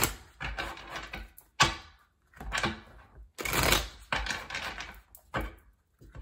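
Tarot cards being shuffled by hand: a string of papery rustles and card slaps, with a sharp tap about a second and a half in and a longer riffle near the middle.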